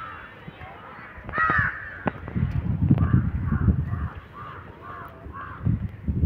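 Crows cawing: one loud call about a second and a half in, then a quick run of about seven short caws near the end.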